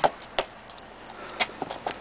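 Blows from a hand landing on a person: a few sharp smacks, two in the first half second and a quick cluster about a second and a half in.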